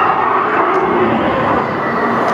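Steady, loud, echoing din of a large indoor hall, with no single event standing out.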